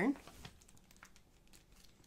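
Clear plastic sleeve holding a printed knitting pattern crinkling faintly as it is picked up and handled, a few light scattered rustles.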